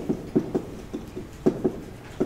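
Chalk tapping and knocking against a blackboard while writing: an irregular run of short, sharp taps, several a second.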